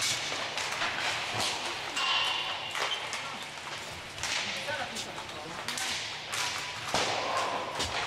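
Inline hockey warm-up shots: repeated sharp cracks of sticks striking pucks and pucks hitting the boards and goal, over the rolling hiss of skate wheels on the rink floor, echoing in the domed hall.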